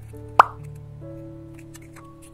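A single short, loud pop about half a second in, rising quickly in pitch, as a yellow float half and a clear plastic cup are pressed together by hand. Background music plays throughout.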